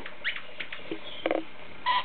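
Goldie's lorikeet giving a few short, high chirps and clicks, with one brief buzzy call a little past halfway.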